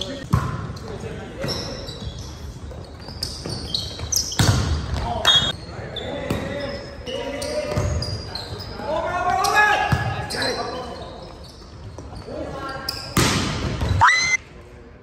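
A volleyball being struck and smacking off the hardwood floor of a gymnasium, a handful of sharp hits spread a second or more apart. Players' voices call out between the hits, all echoing in the large hall.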